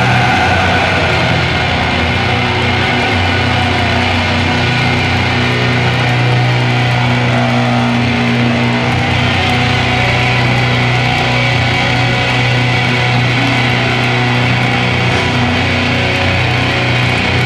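A black metal band playing live: distorted electric guitars, bass and drums, loud and unbroken, with no vocals.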